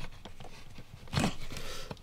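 Accelerator pedal assembly being lifted and slid up off its mount by hand: faint handling noise with one short knock about a second in.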